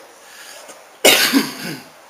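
A man coughing once, about a second in: a sudden harsh burst that fades with a falling voiced tail.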